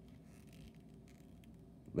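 Faint handling of a small plastic action figure: a few soft clicks and rubs as its ball-jointed head is worked by hand.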